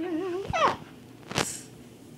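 A child's wordless, wavering high-pitched vocal note that ends in a quick falling squeal about half a second in, followed by a single sharp click a little under a second later.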